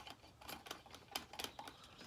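Plastic threads of a Bubble Magus Curve 5 protein skimmer part being screwed on by hand, finger tight, giving a run of faint, irregular small clicks and ticks.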